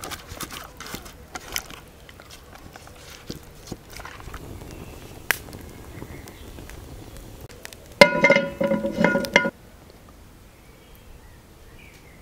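Hands squelching and slapping as they rub sauce into whole raw fish, then a wood fire crackling with a few sharp pops. About eight seconds in, a loud pitched animal call lasts about a second and a half, breaking once, and is the loudest sound.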